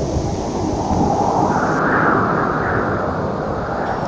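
Storm wind rushing through trees, with wind rumbling on the microphone; a gust swells around the middle.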